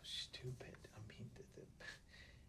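A man's voice speaking very quietly, close to a whisper, in short broken phrases.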